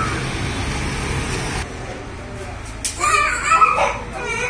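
Steady street traffic rumble and hiss that cuts off abruptly about one and a half seconds in. Near the end a high-pitched child's voice speaks or calls out, the loudest sound.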